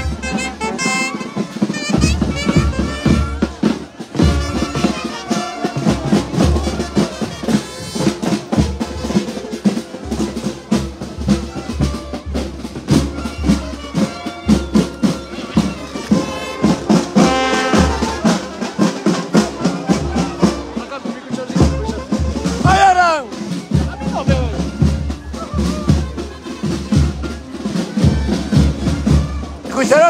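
Brass band with drums playing a lively march-like tune, with crowd voices mixed in.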